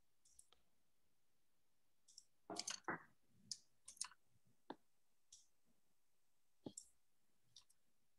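Near silence with about a dozen faint, irregular clicks at a computer, with a quick run of clicks around two and a half to three seconds in.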